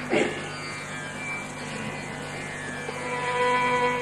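Carnatic concert music in raga Pantuvarali: a steady drone under a soft passage, with a long held melodic note coming in about three seconds in.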